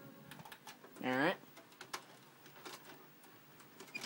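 Faint scattered clicks and taps of handling around the VCR and tape. About a second in comes one short wordless vocal sound, such as an 'uh' or a hum.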